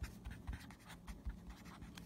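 A pen writing by hand on paper: faint, irregular short scratching strokes.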